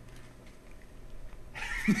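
Quiet room tone, then about one and a half seconds in a man bursts out laughing: a quick run of short ha's that bend up and down in pitch.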